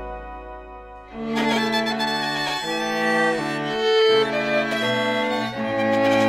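A string quartet of violins and a cello playing a slow passage of sustained, bowed chords. It starts about a second in, after a held chord that fades away.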